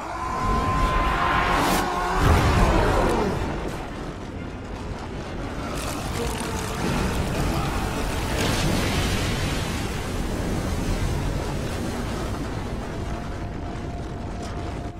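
Cartoon fight sound effects: heavy crashes and a continuous rumbling collapse with water splashing, loudest about two seconds in, under dramatic background music.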